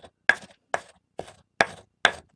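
Stone pestle working a powdered incense mix in a three-legged stone mortar: four sharp, evenly spaced strokes, about two a second.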